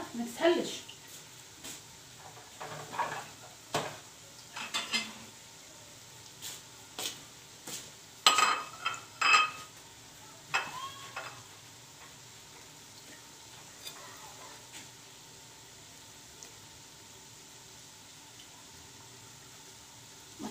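Potato fritters frying in shallow oil in a frying pan: a faint, steady sizzle with scattered sharp clicks and clinks through the first half, then only the sizzle.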